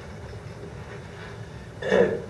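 Steady low room hum, then a man clears his throat once near the end.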